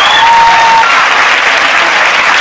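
Studio audience applauding, a dense, steady clapping. Early on, a single voice briefly holds a high note over it.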